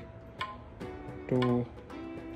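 Electronic tabla samples played through a small speaker, triggered by finger taps on a force-sensing resistor: a few short strokes, each with a brief ringing pitch.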